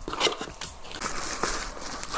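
A small cardboard product box being opened by hand: rustling and scraping of the cardboard with a few sharp clicks as the flap is pulled open.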